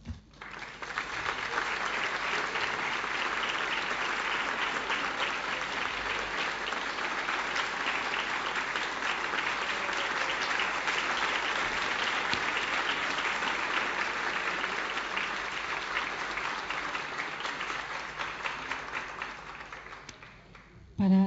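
Audience applauding steadily, the clapping starting just after the speech ends and dying away near the end.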